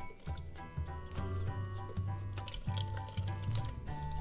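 Background music with a steady bass line, over the trickle and drip of a small pet water fountain's pumped stream falling into its basin.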